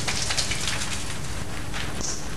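Shower running, water spraying steadily onto skin and a tiled floor in a tiled shower room.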